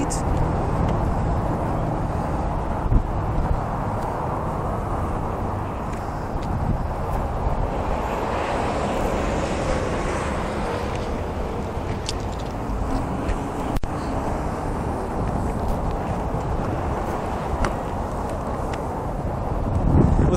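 2002 Corvette Z06's LS6 V8 idling steadily through its Borla cat-back exhaust.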